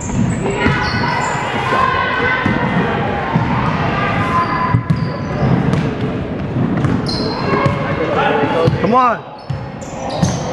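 Basketball bouncing on a hardwood gym floor during play, mixed with indistinct voices of players and spectators in a large hall.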